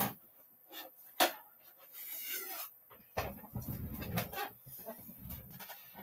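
Faint handling noises as objects are moved about while a ruler is searched for. A sharp click at the start and another knock about a second in, then scattered rustling and shuffling.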